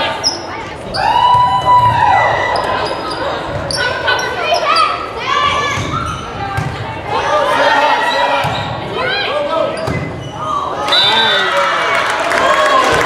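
Volleyball rally in a gym hall: sharp hits of the ball among players' calls and spectators' shouts, echoing in the hall. Cheering and clapping start near the end as the point is won.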